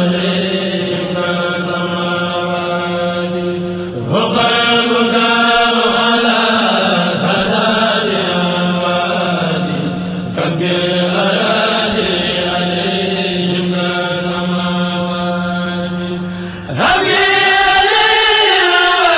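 Chanting of Arabic religious verse, the voice drawing each phrase out in long wavering notes over a steady low drone. The phrases break off and start again about four, ten and seventeen seconds in.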